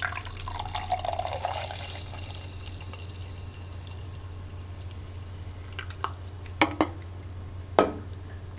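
A canned drink poured into a ceramic mug, followed by a few short knocks in the last two seconds, the loudest just before the end. A steady low hum runs underneath.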